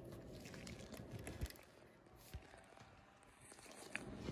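Faint handling sounds from a gloved hand moving a nickel under a USB microscope, with a couple of soft clicks, the clearest about a second and a half in.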